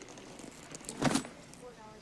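A heavy nylon bag set down on a counter about a second in: a short rustling thud with a clatter of its contents.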